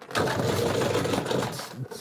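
Guitar amp combo cabinet spun around on its casters over a bare concrete floor: a fast, continuous rattling roll lasting nearly two seconds.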